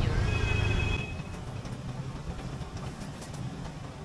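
Street traffic going by: a louder low rumble of a passing vehicle with a brief high whine in the first second, then quieter steady road noise.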